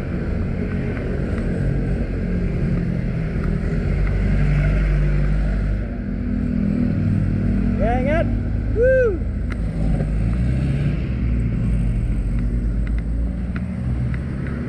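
A 1972 Volkswagen Beetle's air-cooled flat-four engine running, its pitch rising and falling as it is revved gently. A few short rising-and-falling calls cut through it about eight seconds in.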